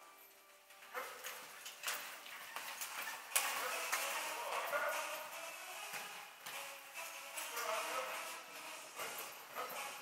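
A horse pulling a carriage at speed over arena sand: irregular hoofbeats and the rattle of the carriage, with voices in the background.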